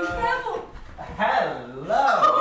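Wordless human vocal sounds, drawn out and wavering in pitch. One held sound ends about half a second in, and a lower one that dips and climbs again follows after a short gap.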